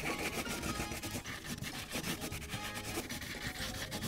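Wax crayon rubbing on coloring-book paper in quick, continuous back-and-forth shading strokes, a dry scratchy sound.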